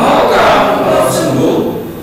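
Many voices of a congregation reading a Bible passage aloud in unison in Indonesian: one spoken phrase, with brief pauses just before and at its end.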